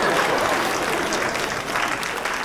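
Studio audience applauding, a dense, steady patter of many hands clapping.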